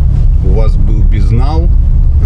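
Steady low rumble of a moving car heard inside the cabin, with short bits of a voice in the middle.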